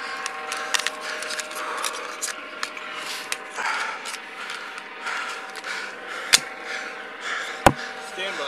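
Clothing and gear rubbing and shuffling against a body-worn camera's microphone, with small clicks throughout and two sharp, loud clicks near the end, over a steady multi-tone hum.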